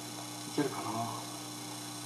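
Steady electrical mains hum from the amplified sound system, a low constant drone. About half a second in comes a brief, faint voice-like sound.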